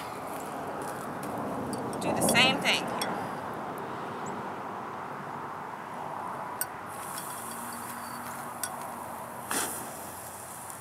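A few light clinks of a metal spoon against a glass jar, then from about seven seconds a steady high hiss as the potassium permanganate and glycerin mixture reacts and ignites.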